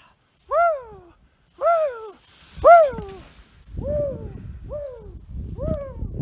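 A person whooping 'whoo!' about six times, roughly one a second, each call rising then falling in pitch, while skiing deep powder. The later calls have a low rumble underneath.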